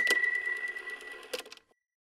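A short end-card sound effect: one bright ding, a single high ringing note that fades over about a second, with a couple of light clicks.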